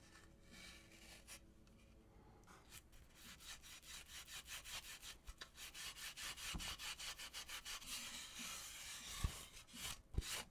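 A cloth rag rubbing oil finish into a carved basswood mask in quick back-and-forth strokes, several a second. The strokes grow faster and louder from about three seconds in. Two low knocks of wood sound among them, the louder one near the end.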